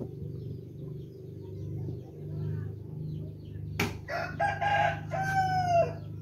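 A rooster crowing once about four seconds in, a call in several parts whose last note falls away, just after a sharp click; a steady low hum runs underneath.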